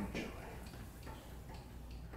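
Faint, regular ticking, a small click about every half second.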